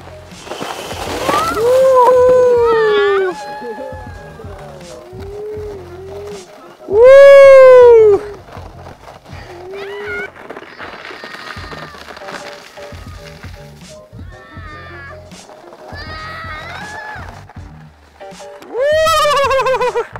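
Young child squealing and yelling with delight while riding a plastic saucer sled down packed snow, with rising-and-falling shrieks; the loudest squeal comes about seven seconds in and a long wavering yell near the end. A rush of scraping from the sled on the snow comes near the start as it is pushed off.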